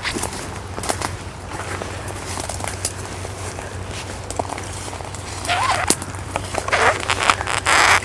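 Footsteps pushing through dry grass and bramble, dry stems and twigs crackling and snapping with many sharp clicks. The rustling gets louder and busier over the last few seconds.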